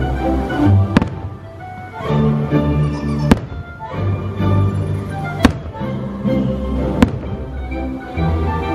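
Aerial firework shells bursting over the show's soundtrack music: four sharp bangs, roughly two seconds apart, standing out above the music.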